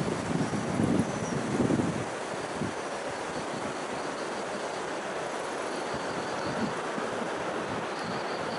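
Wind buffeting the microphone in gusts over the first two seconds, over a steady outdoor rushing hiss.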